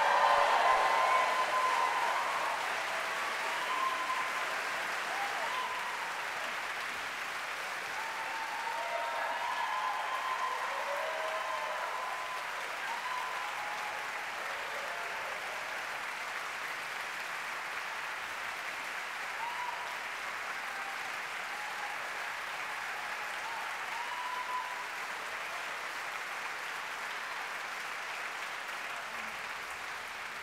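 Large audience applauding in a concert hall, with scattered cheers, loudest at the start and slowly easing off.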